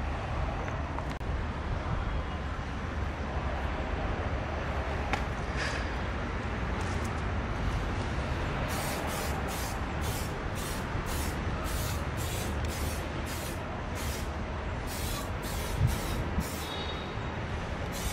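Aerosol tire-shine spray can spraying onto a car tyre in short, even hisses, about two a second, starting about halfway through with one brief pause. Under it, a steady low background rumble runs throughout.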